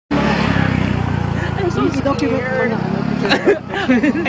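Several people talking and laughing over a steady low hum, like an engine idling, that drops away about three and a half seconds in.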